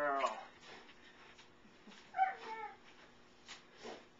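Short-coated Bouvier puppy giving one brief, high whimper about two seconds in.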